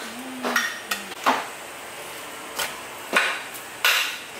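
Butcher's cleaver chopping pork on a stainless steel table: about six sharp, irregularly spaced strikes, the loudest near the end.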